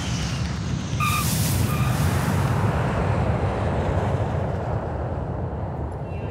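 Jet airliner engines: a loud, deep, steady rumble with a rushing hiss that swells about a second in as the plane passes. Two short high beeps sound near the start.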